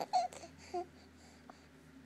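A ten-week-old baby cooing: two short, soft vocal sounds, one just after the start and one a little under a second in.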